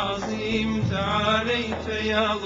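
Arabic devotional chant sung melismatically, a drawn-out wordless vocal line over a steady held low note.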